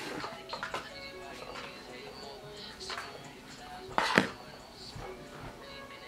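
Playback of a freshly recorded hip-hop track: rapped vocals over a beat, played through the studio monitors. A sharp, loud hit about four seconds in is the loudest moment.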